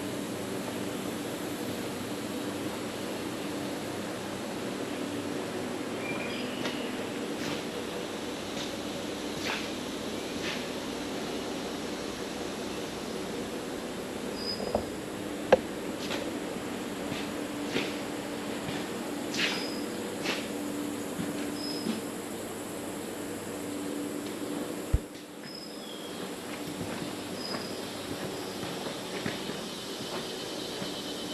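Steady low hum with short high chirps and light clicks scattered through it.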